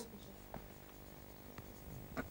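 Faint sounds of writing on a board, with two light ticks from the pen or chalk, over a low room hum.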